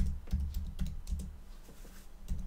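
Typing on a computer keyboard: a quick, irregular run of keystroke clicks that thins out toward the end.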